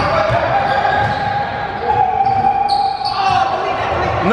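A basketball bouncing on a hardwood gym floor among players' footfalls, echoing in a large indoor gym, with a long steady tone through the middle.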